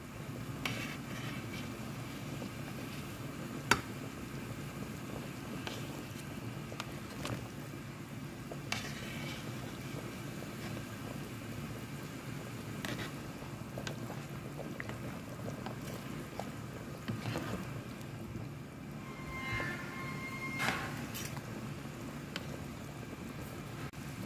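A pot of bone broth at a rolling boil, a steady low bubbling, with a few light clicks of a metal ladle against the pot as the foam is skimmed off.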